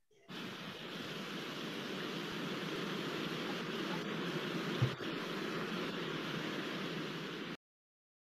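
Steady rushing ambient noise from a promotional film's soundtrack, starting just after the beginning and cutting off suddenly near the end. A brief low thump a little before five seconds in is the loudest moment.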